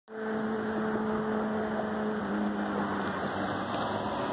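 A motor vehicle engine running with a steady hum over a broad rushing noise. The hum drops slightly in pitch about halfway through.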